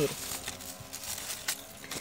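Faint rustling of cacao leaves and vine foliage being handled, with one short sharp click about one and a half seconds in.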